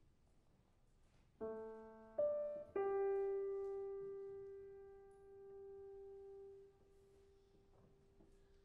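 Grand piano playing three notes in quick succession about a second and a half in. The last note is held, ringing and slowly fading for about four seconds before it is damped, leaving quiet room tone.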